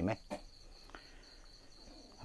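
Crickets chirping: a steady, high-pitched, finely pulsing trill.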